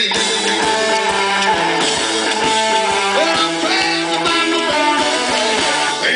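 Live rockabilly band playing an instrumental passage: a Gretsch hollow-body electric guitar plays a run of notes over a steady drum beat.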